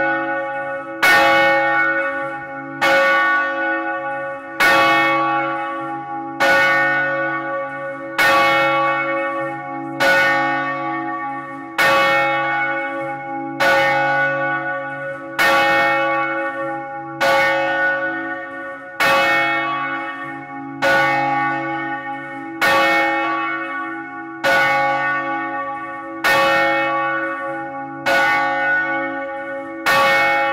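Large swinging church bell tuned to C♯3, the biggest of a ring of nine, rung 'a distesa' with a falling clapper: a steady stroke about every two seconds, each one's deep ringing hum running on under the next.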